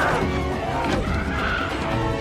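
Action film sound mix: dramatic score under screeching from attacking mandrills, with rushing, scraping effects.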